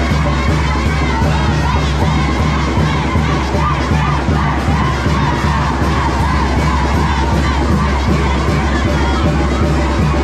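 A large crowd shouting and cheering, many voices at once, with a steady low bass from the banda's music underneath.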